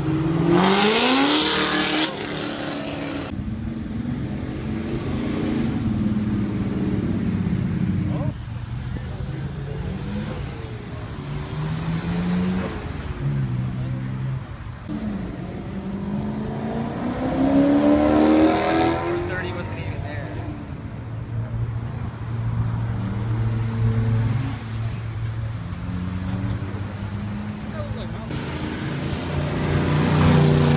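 A series of cars accelerating hard past one after another, their engines revving with pitch rising through the gears, starting with a C6 Corvette's V8. The loudest passes come in the first few seconds, again around the middle, and at the very end.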